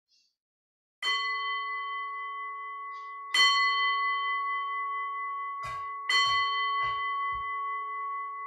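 An altar bell struck three times, about two and a half seconds apart, each stroke ringing on with a long clear decay, marking the elevation of the consecrated chalice. A few soft low knocks come near the end.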